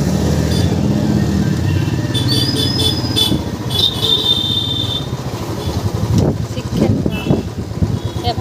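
Motorcycle engines running in a busy market street, with high thin tones about two to five seconds in and voices near the end.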